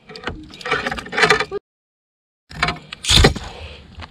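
Handling noise as a caught bass is unhooked and lifted: irregular rustling and knocks, broken by about a second of dead silence where the audio drops out, then a short loud rush of noise about three seconds in.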